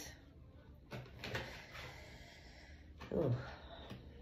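Faint handling sounds as a single oracle card is drawn from the deck: a sharp click about a second in, then softer clicks and a light rustle, followed by a short spoken "oh" near the end.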